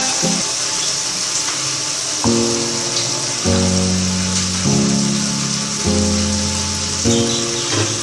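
Onion-and-spice masala frying in oil in a pot, a steady sizzle. From about two seconds in, background music of held chords plays over it, the chord changing roughly every second.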